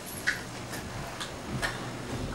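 Light, sharp ticks at a steady pace, about two a second.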